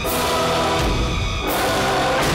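Dramatic background score with sustained choir-like voices, changing abruptly about a second and a half in.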